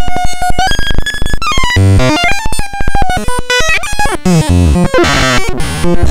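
Experimental electronic music: a rapid stutter of synthesizer tones whose pitch holds, jumps and slides, with heavy bass bursts about two seconds in and again near the end.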